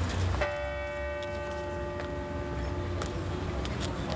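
A large church bell struck once, with a sudden onset less than half a second in. Its several tones ring on and fade away one after another over about three seconds, the lowest lingering longest, over crowd noise.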